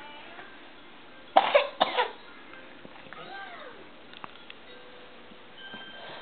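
Two loud coughs about half a second apart. About a second later comes a short, faint baby vocalisation that rises and falls in pitch.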